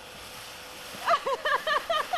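Faint outdoor hiss, then from about a second in a person laughing in quick, high bursts.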